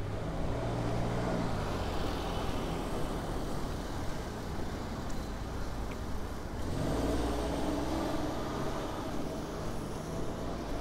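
Motor vehicles passing on a narrow city street: an engine hum swells about a second in and again, louder, from about seven to eight and a half seconds.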